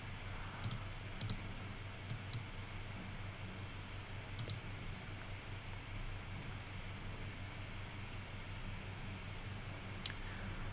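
A handful of faint, sharp computer mouse clicks spread over the first six seconds, over a steady low hum of room noise.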